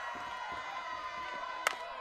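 Steady murmur of a stadium crowd, then a single sharp crack of a softball bat hitting the pitch about one and a half seconds in.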